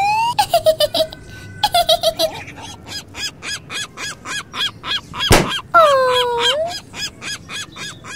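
Cartoon sound effects: quick repeated honking, chirping bird calls, several a second. About five seconds in comes a single sharp pop, the red balloon bursting, followed by a short falling-then-rising tone.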